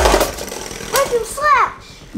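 Two Beyblade Burst spinning tops, Spriggan Requiem and Legend Spriggan, whirring and scraping in a plastic Beyblade stadium, with a sharp clash knock right at the start. About a second in, a high voice gives two short exclamations that rise and fall in pitch.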